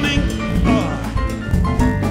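Live jazz band with horns, bass and drum kit playing an instrumental passage, its lead melody bending in pitch over the rhythm section.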